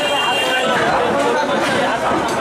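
Several people talking over one another: steady crowd chatter.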